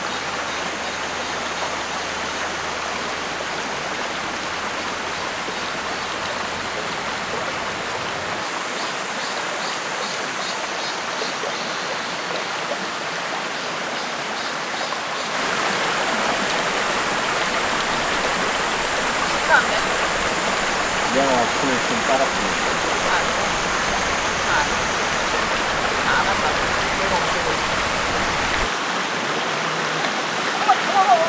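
Shallow rocky forest creek running, a steady rush of water that grows louder about halfway through. Faint voices come in over the water in the second half.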